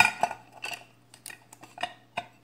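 Wooden colored pencils being dropped into a painted metal tin can. They clink and rattle against the metal and each other in a series of irregular light knocks.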